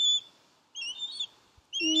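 Songbird chirping: three short, high chirped phrases about a second apart.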